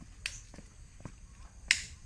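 Three short, sharp clicks: a faint one about a quarter of a second in, another about a second in, and the loudest near the end, over a faint low background.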